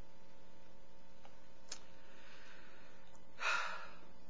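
Steady low electrical hum with faint steady tones, and a short breath taken close to the microphone about three and a half seconds in.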